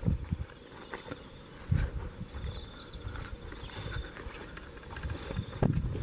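Footsteps through dry grass and rice stubble, irregular, with a couple of heavier steps about two seconds in and near the end.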